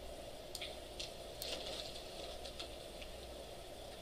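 Quiet classroom room tone, a steady low hum, with a few faint, scattered clicks.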